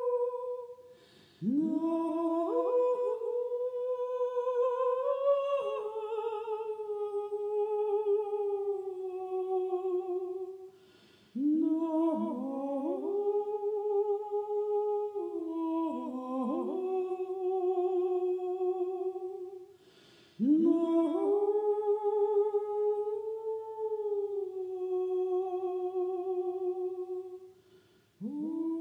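Wordless humming by a layered woman's voice, in three long phrases. Each phrase swoops up into held notes that drift slowly between pitches, with brief pauses between phrases.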